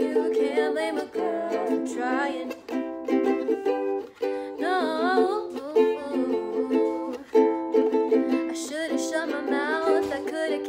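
A ukulele strumming chords in a steady rhythm, with girls' voices singing over it in short phrases at times.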